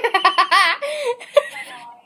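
A young girl laughing: a quick run of giggles, strongest in the first second and trailing off after.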